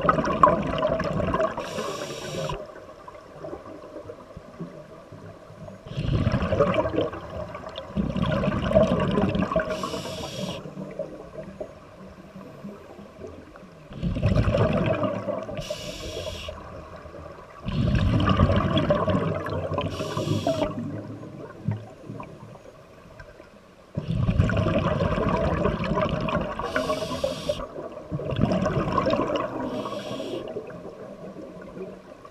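Scuba diver breathing through a regulator underwater: loud bursts of bubbling exhaled air every few seconds, with a short hiss from the regulator on the inhale, five times.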